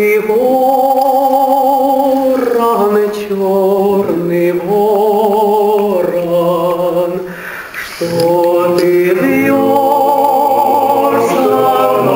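Male vocal ensemble singing a cappella in several-part harmony, performing a Russian army song from the First World War. Long held chords with a slight waver in pitch, sung in phrases of about two seconds with short breaths between them and a brief drop in level near the two-thirds point.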